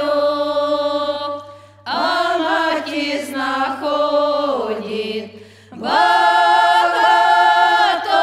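Women's folk choir of eight voices singing a traditional Ukrainian village song a cappella in several parts. A held chord fades out near two seconds in, a new phrase begins after a short breath and slides downward, then after a second short pause near six seconds the voices come in again on a loud held chord.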